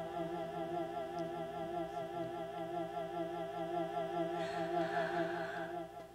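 A hummed vocal note held with an even vibrato over a lower, steadier tone. A breathy hiss joins it near the end, and the sound dies away just before the end.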